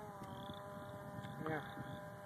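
Distant RC foam plane's Turnigy electric motor and propeller running at a steady pitch, a thin even drone.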